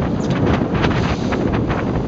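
Strong wind rushing over the microphone, a steady low buffeting, with choppy water around the boat.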